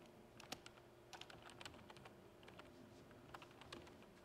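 Faint typing on a computer keyboard, an irregular run of key clicks.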